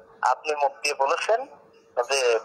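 A man speaking in Bengali, played back through a mobile phone's small speaker, with a brief pause in the second half.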